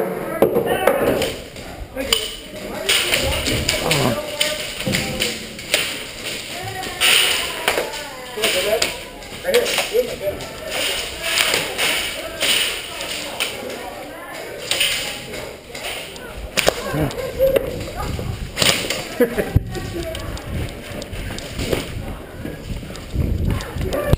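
Irregular thuds and taps from a player moving on foot, with distant voices echoing in a large hall.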